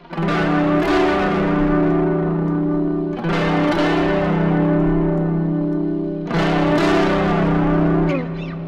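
Electric guitar, a Fender Stratocaster, played through the Axe-FX III's Dynamic Distortion block: a chord is strummed near the start and again about every three seconds, each time left to ring. Meanwhile the block's peaking filter frequency is being swept down.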